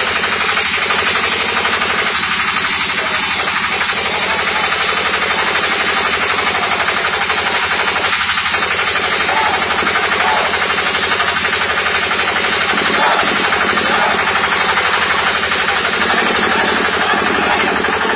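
A loud, continuous rapid rattle of sharp impacts, running on without a break.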